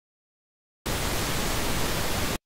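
Silence, then, a little under a second in, a steady hiss of TV static noise starts abruptly: a static sound effect.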